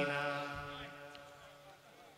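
A man's long held, chanted vocal note through a public-address system, fading out over about a second and a half with its echo dying away into near silence.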